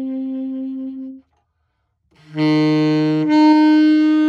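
Tenor saxophone playing slow, held notes. A long note stops just over a second in, and after a pause of about a second a lower note comes in, jumps up an octave a little past three seconds and is held.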